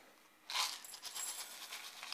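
Seramis-type fired-clay granules poured from a plastic bag into a small cup around a seedling's roots, a steady rattling trickle of small hard grains that starts about half a second in.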